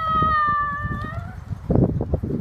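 Labradoodle whining: one long high whine that fades out a little over a second in, over the low rumble of wind buffeting the microphone.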